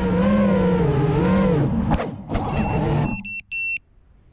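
A 5-inch FPV quadcopter's brushless motors and propellers whine, the pitch wavering up and down as it descends to land, then cut off suddenly about three seconds in. A few short, high electronic beeps from the quad follow.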